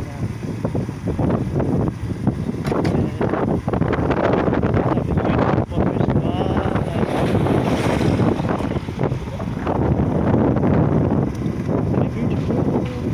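Wind buffeting an open microphone, a dense, fluttering rumble over outdoor street ambience.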